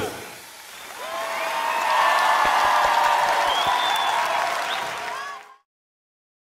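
Large audience applauding and cheering after the song ends, heard through the performance video's audio. It cuts off abruptly near the end as playback is paused.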